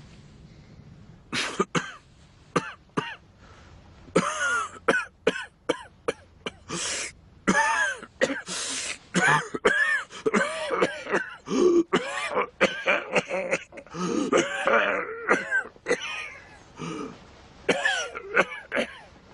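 A man in a coughing fit: harsh, hacking coughs and throat clearing, broken by strained, voiced groans and gasps. It starts about a second in and runs on in a rapid string of bursts.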